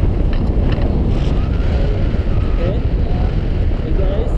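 Wind buffeting a GoPro action camera's microphone: a loud, steady, rumbling rush of air.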